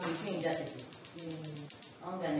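Speech in a small room, with a faint, fast, even high ticking behind it, about ten ticks a second, that stops at the end.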